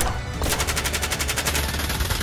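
Gunfire: a single shot at the start, then from about half a second in a fast, even run of rapid shots. Background music plays under it.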